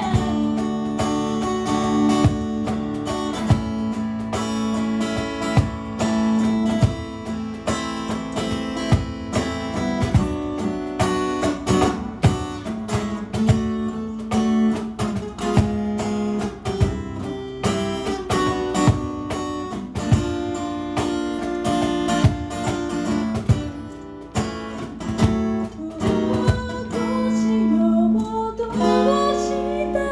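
Instrumental break of a live acoustic pop song: acoustic guitar strumming chords over regular cajon beats. A woman's singing voice comes back in near the end.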